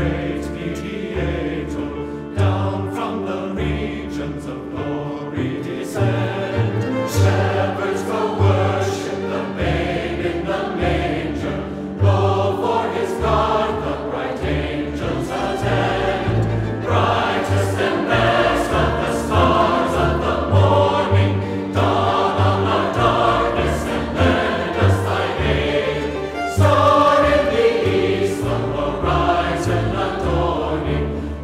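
Large mixed choir singing together, with strings and a double bass playing a moving low line underneath.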